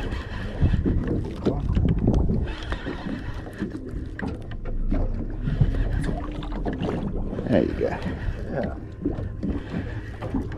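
Close knocks and rustles of hands handling a fishing rod, line and baitcasting reel right at a chest-worn microphone, over a steady low rumble of wind and water around the boat at sea.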